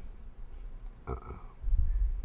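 A man's short, low hesitant 'uh', followed by a low rumble near the end.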